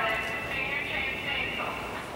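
An indistinct, off-microphone voice over steady background noise.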